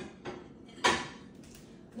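One short knock of kitchenware being handled about a second in, over faint room noise.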